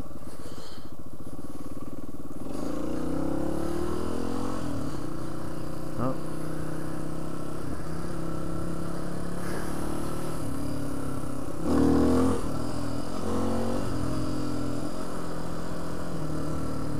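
Suzuki DR350 trail bike's single-cylinder four-stroke engine running under way. Its pitch rises as the bike accelerates about three seconds in, then holds fairly steady, with a short louder rev near twelve seconds.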